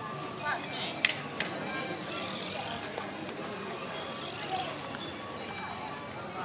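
Outdoor ambience of a busy town square: scattered voices of passers-by over a steady background haze, with two sharp clicks a little after a second in.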